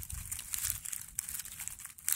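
Quiet, irregular crackling and rustling of dry leaf litter and twigs, with a low rumble underneath.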